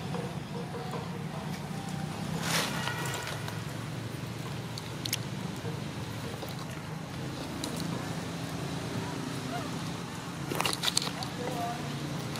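Indistinct background voices over a steady low hum. A brief louder sound comes about two and a half seconds in, and a few sharp clicks come near the end.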